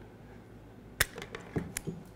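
Spring-loaded auto-adjusting wire stripper closing on a thin wire: one sharp snap about a second in as the jaws grip and pull the insulation off, followed by a few lighter clicks.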